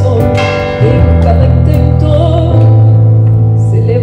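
Live band accompaniment of a ballad: keyboard chords over held low bass notes that shift twice, with a few drum hits, between sung lines.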